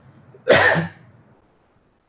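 A single short cough, about half a second long, starting about half a second in.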